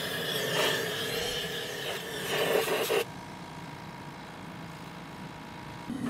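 Compressed air from an air-compressor blow gun hissing into a fired ceramic casting shell, blowing out leftover ash. The blast cuts off suddenly about three seconds in, leaving a quieter steady background.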